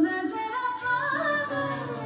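A song with a sung vocal melody playing, the voice holding and gliding between notes over its accompaniment.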